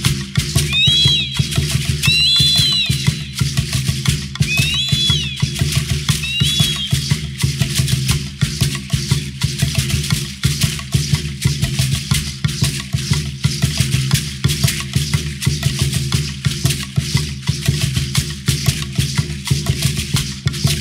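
Percussive music for Aztec dance: rattles shaken in a fast, even rhythm over a low, steady beat. A high whistle glides up and falls back four times in the first seven seconds.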